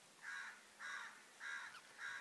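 A bird calling faintly in the background: four short, evenly repeated calls about 0.6 seconds apart.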